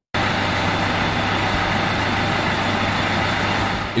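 A motor vehicle's engine running steadily at idle, with a constant low hum under a loud, even noise that cuts in abruptly at the start.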